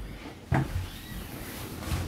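A single short knock about half a second in, then faint room noise.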